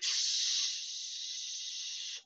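A person hissing a long, steady 'shhh' with the mouth, in imitation of white noise. It starts abruptly and drops slightly in loudness about two-thirds of a second in.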